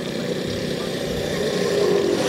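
Engine and road noise of traffic, a steady rumble that grows slowly louder toward the end, with a faint hum coming in near the end.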